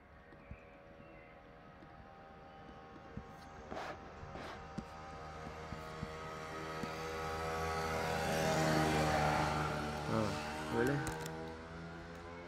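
A steady engine hum that grows louder over several seconds and peaks near the end, with a few faint clicks.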